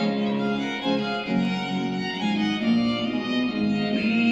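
Classical music: a violin playing a melodic line over an orchestral string accompaniment, with sustained notes at a steady level.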